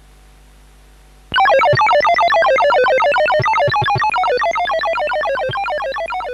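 Home computer sound chip playing a rapid run of short electronic beeps, each falling in pitch, about six a second. It starts suddenly a little over a second in and slowly fades.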